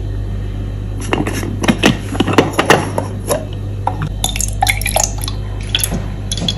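Clicks and knocks of a plastic cup lid and its whisk plunger being handled and set down on a stone countertop, with milk pouring into the plastic cup.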